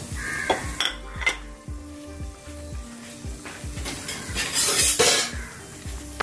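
Green chillies and curry leaves sizzling in hot oil in a pot, with scattered clinks and scrapes of a stirring utensil; the sizzle briefly grows louder about four and a half seconds in.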